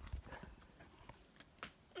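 Faint handling noise of a phone being turned in the hand: a few soft low knocks in the first half-second, then a few small clicks.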